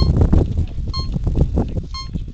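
Electronic timer beeping once a second, short high-pitched beeps, counting down to the start of a race, over wind rushing on the microphone.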